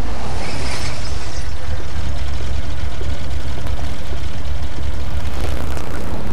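A car engine running with a steady, heavy low rumble.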